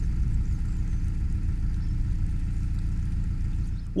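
Narrowboat engine running steadily under way at cruising speed, a constant low rumble.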